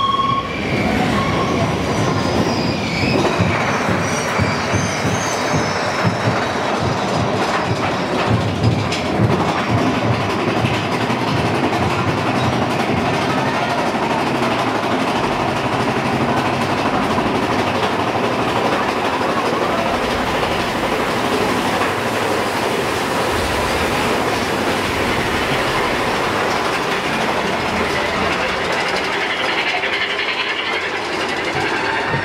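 Big Thunder Mountain Railroad's mine-train roller coaster running along its track, heard from on board: a steady rattling rumble with clacking from the wheels, and irregular knocks during the first ten seconds or so.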